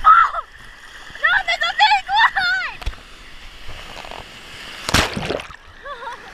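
Ocean surf splashing around a GoPro held at the waterline, with high, wavering squeals from children in the waves during the first three seconds and one loud splash about five seconds in as a wave hits.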